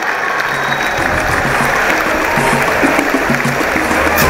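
Audience applauding, with music and a low, repeating bass line coming in about a second in.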